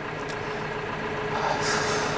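Tractor engine idling steadily, heard inside the cab as a constant hum. A short hiss of air comes near the end.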